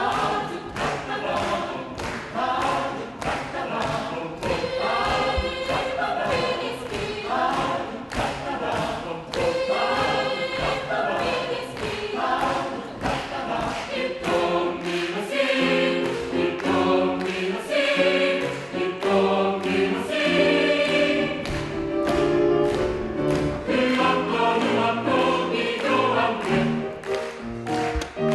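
Mixed choir singing a swing jazz arrangement, over a steady beat of sharp clicks about two a second. From about 14 seconds in, low held chords from the men's voices fill in beneath the upper parts.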